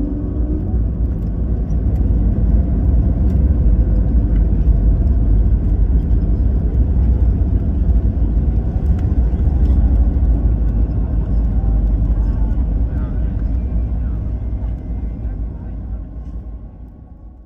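Airliner cabin noise during the landing rollout: a loud, steady low rumble from the runway and the engines, heard from inside the cabin. It slowly eases off over the last few seconds as the aircraft slows with its spoilers deployed.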